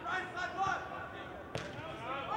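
Indoor soccer game: players' shouts echoing around a large hall, with one sharp thud of the ball about a second and a half in.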